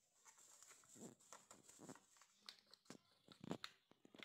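Faint, irregular crinkling and scraping sounds of kitchen handling while red chili powder is added to a steel bowl of oil.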